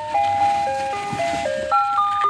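Ice cream truck's electronic chime playing its jingle: a melody of clear, steady notes stepping up and down, with a lower second part moving under it.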